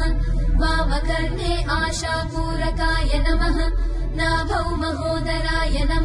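Hindu mantra chanting: a voice intoning in a sung, melodic line over a steady low drone.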